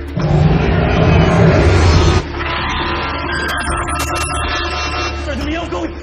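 Dramatic film score under a loud, deep rumbling burst of noise that lasts about two seconds and cuts off suddenly, followed by sustained music tones.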